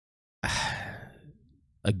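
A man's long sigh, breathed out into a close microphone. It starts suddenly about half a second in and fades away over about a second.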